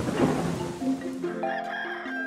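Cartoon background music with a rooster crowing over it as a sound effect, after a brief noisy rush at the start.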